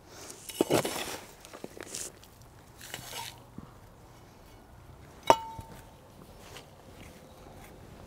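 Potting soil scooped and poured into a small pot with a metal hand scoop, in a few short gritty rushes. About five seconds in, the scoop gives one sharp metallic clink that rings briefly.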